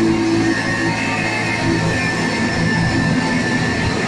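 Live band music played loud: a dense, continuous wall of sound with sustained droning tones and no clear beat.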